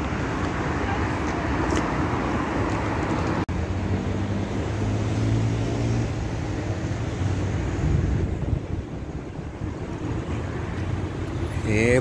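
Road traffic on a city street: a steady rush of car tyres and engines. It is loudest in the first few seconds, with a low engine hum from a passing vehicle in the middle, and the sound cuts out for an instant about three and a half seconds in.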